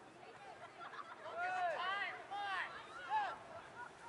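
A few short shouted calls from voices, in quick succession between about one and three seconds in, fainter than the nearby cheering.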